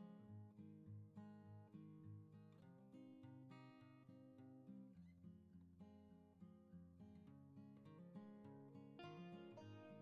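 Soft background music played on acoustic guitar.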